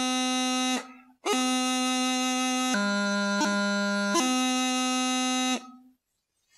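Bagpipe practice chanter playing the taorluath movement from B: a held reedy note stops, and after a short pause a new note sounds, drops to a lower note, is broken by quick crisp grace notes, and settles on a final held note that stops near the end.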